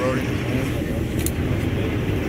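Steady low rumble of vehicles, with faint indistinct voices.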